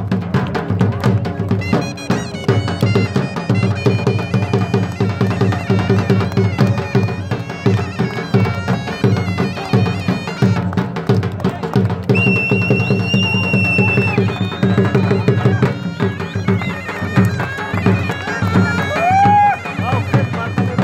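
Live traditional dance music: a dhol (two-headed barrel drum) beaten in a steady, busy rhythm under a wind instrument that plays a melody over a held drone.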